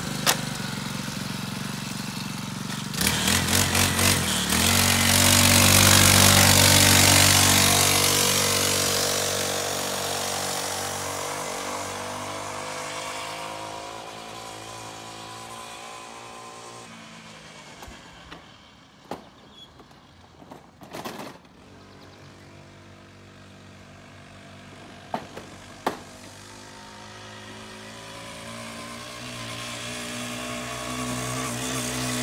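Small two-stroke engine of a mini pocket bike running just after being started, revved hard in the first seconds and then fading as the bike rides off. It grows louder again near the end as the bike comes back. A few brief sharp knocks sound in the quieter middle stretch.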